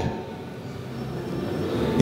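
Steady background din of a large, crowded event hall with no voice in front of it, growing a little louder toward the end.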